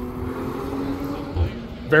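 Drift car engine holding a steady note over a hiss as it runs through the course, fading about a second and a half in.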